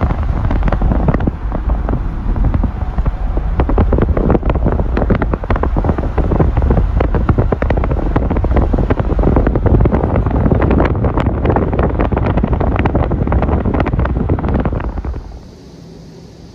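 Wind buffeting the microphone from a moving truck, a loud, gusting rush with road noise underneath. It drops away sharply about a second before the end, leaving a quiet outdoor background.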